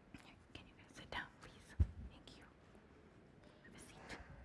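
Faint whispering and small knocks and shuffles, with one low thump just under two seconds in.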